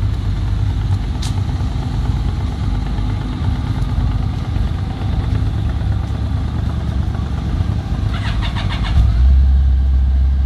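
Motorcycle engines idling; about eight seconds in, a short rattle of starter cranking, and a second later a Yamaha FJ's inline-four catches and settles into a steady idle, louder than the rest.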